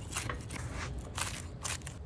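Chef's knife cutting through a crisp, grill-toasted flour tortilla quesadilla on a wooden cutting board: a few short, crisp crunches.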